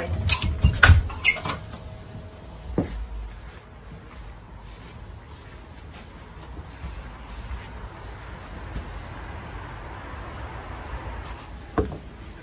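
Interior door opening by its lever handle: sharp latch clicks and knocks in the first second or two, with one more knock a little later. After that comes steady low background noise from handling and walking, and a single click near the end.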